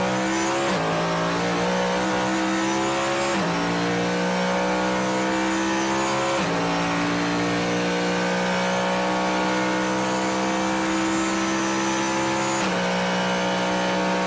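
Citroen C1's 1.0-litre three-cylinder engine pulling hard under acceleration, heard from inside the cabin. Its pitch climbs slowly, with a few sudden steps in pitch.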